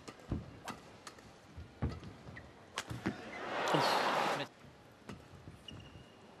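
Badminton rally: racket strings striking a shuttlecock, sharp clicks at uneven gaps of about a third of a second to a second. About three and a half seconds in the rally ends and the arena crowd cheers for about a second.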